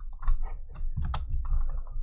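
A few sharp clicks of computer keys being pressed, the loudest about a second in.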